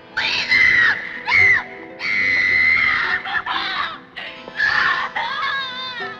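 A woman screaming in distress in about five cries, the longest lasting about a second, over a film's music score.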